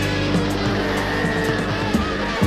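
1970s rock music played from a vinyl LP: held low bass and keyboard notes, regular drum hits, and high tones that slide in pitch.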